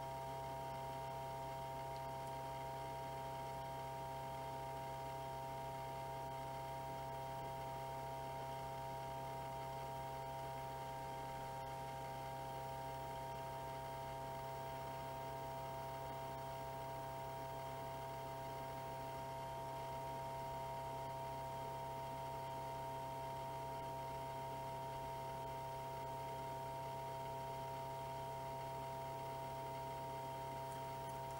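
A steady electrical hum: a low drone with several higher constant tones above it, unchanging, over a faint hiss.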